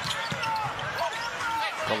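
A basketball being dribbled on a hardwood arena court, bouncing repeatedly.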